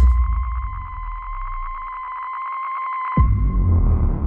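Horror-trailer sound design: a sustained high electronic tone with a fast flutter, over a low rumble that fades away. About three seconds in, the tone cuts off under a sudden deep hit that turns into a low rumbling drone.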